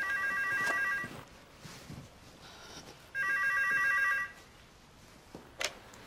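Corded office desk telephone ringing twice, each ring a steady electronic tone about a second long, about three seconds apart, followed near the end by a short click as the handset is lifted.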